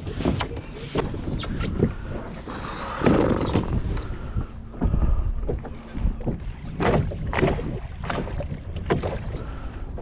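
Scattered hollow knocks and thumps of a small plastic boat hull and gear as a person climbs in and pushes off from a dock by hand, over a steady low rumble of wind on the microphone.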